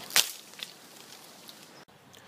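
A single sharp swish about a fifth of a second in, then a few faint ticks over a low hiss.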